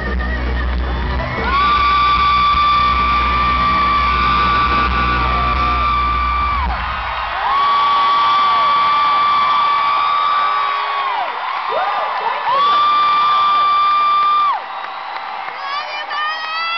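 Three long, high screams from a fan close to the microphone, over an arena crowd cheering. The band's closing music plays underneath and stops about seven seconds in.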